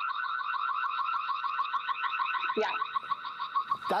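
Ring Spotlight Cam's built-in siren sounding: a loud, ear-piercing rapid warble of about eight pulses a second. It cuts off near the end.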